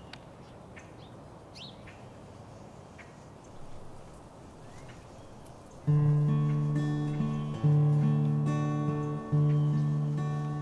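A few short bird chirps over faint outdoor ambience. About six seconds in, an instrument starts playing chords, each one struck and left to ring, re-struck about every second and a half.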